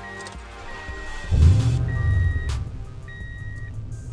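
Truck engine starting about a second in, loudest as it catches, then settling to a steady idle.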